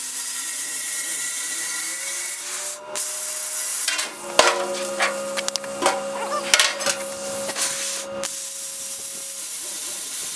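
Handheld plasma cutter cutting a hole through the thin sheet steel of a fuel tank: a steady hiss with a faint hum underneath, stopping briefly twice, with scattered clicks in the middle.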